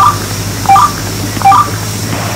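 Three short two-note electronic beeps, about three-quarters of a second apart, each a low note stepping up to a higher one, over the steady hum of the bus engine in the cabin.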